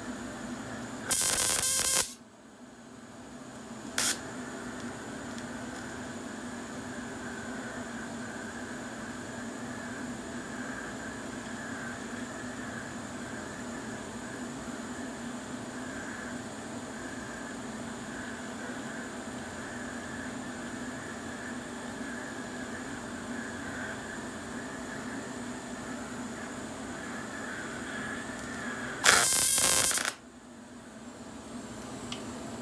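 TIG welding arc burning steadily on a small steel hose fitting: a continuous hiss over a steady hum. Two loud bursts of about a second each break in, about a second in and again just before the end.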